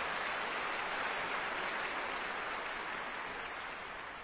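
A steady, even rush of noise with no tone in it, easing off near the end.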